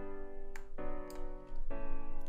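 Sampled Steinway piano from FL Studio's FLEX plugin playing a progression of sustained chords, a new chord about every second.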